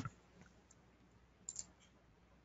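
Near silence: room tone, with two faint short clicks about one and a half seconds in.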